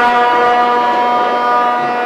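Ice rink goal horn sounding one long, steady blast, signalling that a goal has been scored.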